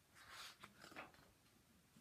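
Faint rustle of a large picture-book page being turned, twice in the first second, then near silence.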